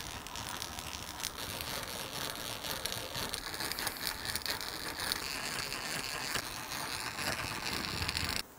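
Hand-cranked eggbeater drill turning a Forstner bit into a guitar's wooden headstock: a steady whir of the gears with fine rapid clicking as the bit cuts a shallow recess.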